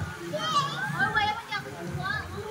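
Children's voices nearby, high-pitched calls and chatter rising and falling, with no clear words.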